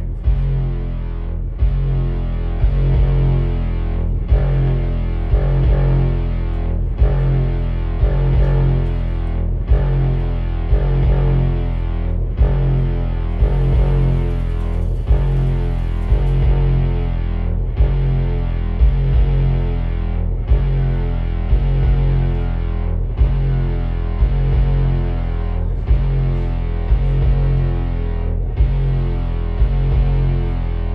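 Loud live experimental electronic music from a tabletop rig of patch-cabled electronics and effects: a heavy, distorted low drone looping about every 2.7 seconds, with a short click or dropout at each repeat. A brief high hiss rises over it about halfway through.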